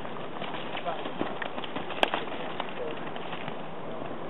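Hoofbeats of a racking horse in its quick four-beat gait on arena sand as it passes close by: a rapid, uneven run of soft strikes through the middle, with one sharp knock about two seconds in, over steady outdoor hiss.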